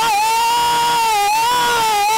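A singer's voice holding one long, high, loud note, nearly steady with slight wavers in pitch, in the middle of a gospel praise break.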